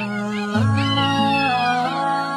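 A young child crying, with long high cries that slide up and down in pitch, over background music with held low notes.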